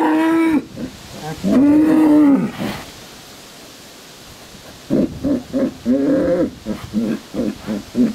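Bulls bellowing: two long bellows in the first three seconds, each rising and falling in pitch, then after a lull a run of short, choppy bellows. They are bellowing at the spot where slaughter offal lay, apparently at its lingering smell.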